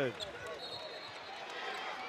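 Live basketball game sound from the arena floor: a steady crowd murmur with play on the hardwood court.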